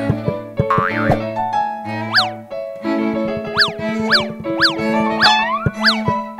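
Playful cartoon soundtrack music with steady held notes, overlaid from about two seconds in by a run of springy boing effects: quick pitch sweeps that shoot up and drop back down, about one every half second to second.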